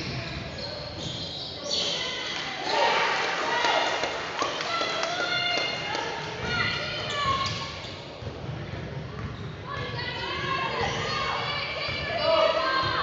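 Basketball game on a hardwood gym floor: the ball bouncing, sneakers squeaking in short high-pitched chirps, and players' voices, all echoing in a large gym.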